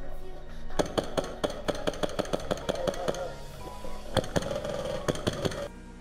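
Airsoft replica rifle firing strings of sharp shots, about five a second at first, then a sparser run, over background music.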